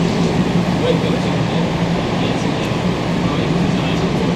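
Steady hum and rumble inside a vintage MR-63 Montreal metro car.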